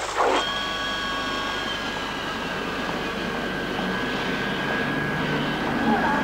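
Jet aircraft engines whining steadily over a low rumble, starting abruptly just after the start.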